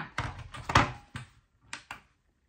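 A handful of short knocks and clicks as a digital kitchen scale is handled on a tabletop and switched on, the loudest about three-quarters of a second in.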